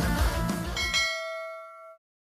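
Rock guitar music fades out while a single bell-like chime strikes about a second in. The chime is a subscribe-button notification sound effect, several clear ringing tones that hang on and then cut off suddenly at the end.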